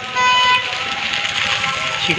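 News-channel graphic transition sound effect: a short, loud pitched blast just after the start, then a noisy rush.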